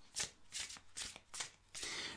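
A deck of oracle cards being shuffled by hand: a quick run of short, separate shuffling strokes as the cards slide against each other.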